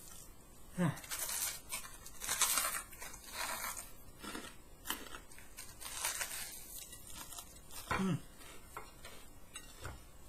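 Crunching and tearing of a thick, crusty deep-fried batter coating being bitten into and chewed, in irregular crackly bursts, with a hummed 'mm' about a second in and again near the end.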